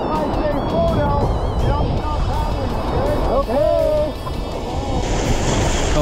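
River rapids rushing and splashing around an inflatable raft, with wind on the camera microphone. Wavering pitched sounds run over the noise, and the splashing grows stronger about five seconds in.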